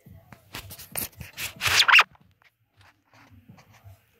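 Close rubbing and scraping, a quick run of short rasping strokes that grows to the loudest one about two seconds in, then a few faint clicks.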